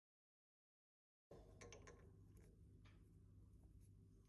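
Near silence: total silence for about the first second, then faint room tone with a low steady hum and a few light clicks of a micrometer being handled against the turned aluminium bar.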